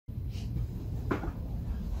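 A single soft knock about a second in, over a steady low hum of room noise.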